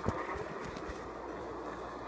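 A steady rushing roar like wind from the tornado video playing on a tablet, with a single knock right at the start.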